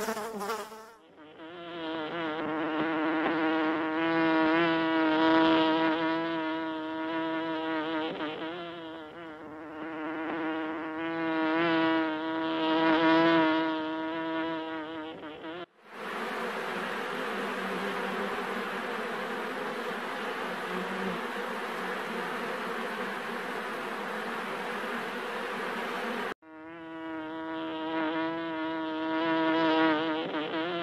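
Honey bees buzzing: a close, pitched buzz that wavers in pitch and loudness. About sixteen seconds in it cuts abruptly to the denser, noisier hum of a mass of bees, which lasts about ten seconds. Then it cuts back to the pitched buzz.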